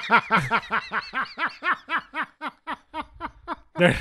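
A person laughing hard: a long run of quick, rhythmic 'ha' pulses that gradually taper off, then a louder burst of laughter near the end.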